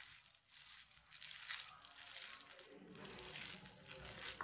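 Faint sound of a hand mixing and squeezing a damp mixture of finely chopped cauliflower, gram flour and egg in a bowl.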